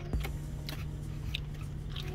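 A man chewing a mouthful of chili beef, with a few faint mouth clicks, over a steady low hum in a car cabin.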